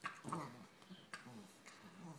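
A yellow and a black Labrador puppy play-fighting, making short, repeated puppy vocal sounds, with a few light knocks from the tussle.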